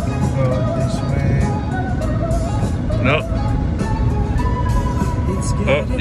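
A song with a singing voice and a steady beat playing on a car stereo, over the low road rumble of the moving car.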